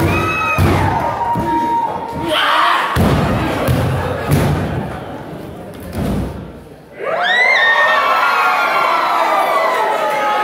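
Wrestlers' bodies hitting a wrestling ring's mat, several heavy thuds in the first seven seconds, over a crowd shouting and cheering. About seven seconds in, the crowd breaks into a loud yell.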